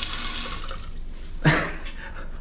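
Toilet bidet nozzle spraying water at high pressure into the bowl with a steady hiss that dies away under a second in. A sharp click follows about a second and a half in.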